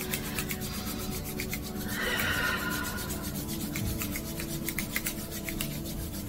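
Palms rubbed briskly together to warm the hands, a dry skin-on-skin rubbing made of quick, even strokes.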